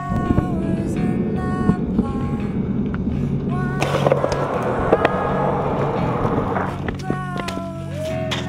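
BMX bike tyres rolling on rough asphalt, with a few knocks, then the bike grinding along a ledge for about three seconds from around four seconds in. Background music plays throughout.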